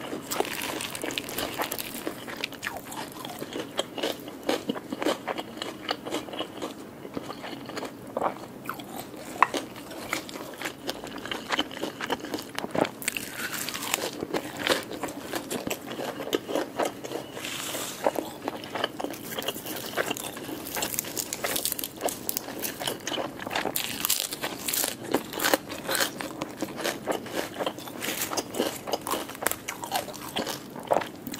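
Close-miked chewing and biting of a lettuce wrap filled with grilled tilapia. The crisp lettuce crunches in quick, irregular runs of small clicks.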